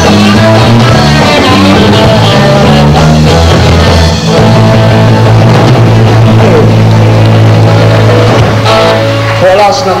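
Live rock and roll band with saxophone, electric guitars, bass and drums playing loudly, settling about four seconds in onto one long held chord that stops shortly before the end, where a man starts talking.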